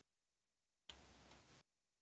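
Near silence: for under a second in the middle, a faint patch of room hiss with a few light ticks comes through.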